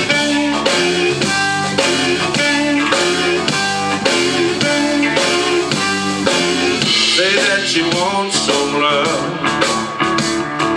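Live electric blues band playing the opening of a song: amplified harmonica over electric guitar, bass guitar and drum kit, with a steady beat. The harmonica's notes bend up and down in the second half.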